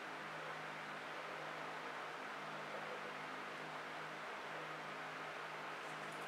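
Steady background hiss with a low, even hum underneath: room tone, with no distinct sound event.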